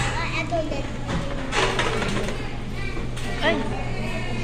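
Restaurant din: overlapping voices of adults and children talking in the background over a steady low hum.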